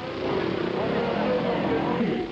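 Racing motorcycle engines, two-stroke 125 cc Grand Prix bikes, running as a steady, slightly wavering drone on a TV race broadcast's sound.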